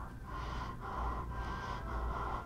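A man's heavy, distressed breathing with gasps and sniffs, in a repeated rhythm of breaths.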